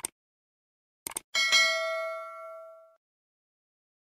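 Subscribe-animation sound effects: a mouse click, two quick clicks about a second in, then a single notification-bell ding that rings out and fades over about a second and a half.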